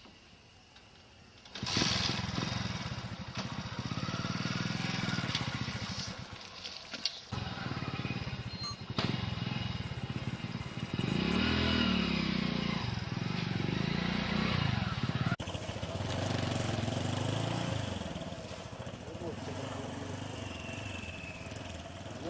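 Motorcycle engine running, starting suddenly about two seconds in, its pitch rising and falling as it revs up and down.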